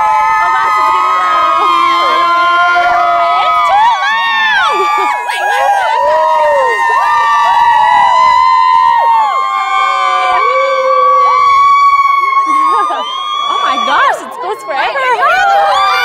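A close crowd of young people cheering and shouting, many voices at once, loud throughout with a brief dip about fourteen seconds in.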